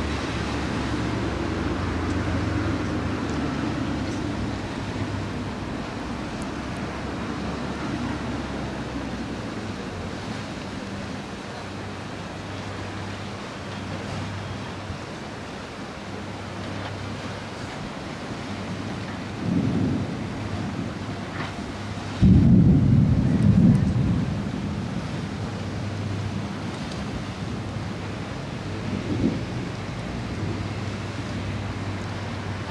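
Thunder rumbling from a thunderstorm over a steady wash of wind and surf noise. The loudest peal starts suddenly about 22 seconds in and lasts about two seconds, with shorter rumbles a few seconds before it and again near the end.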